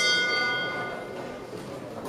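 Boxing ring bell struck once to start the round, its metallic ringing fading away over about a second.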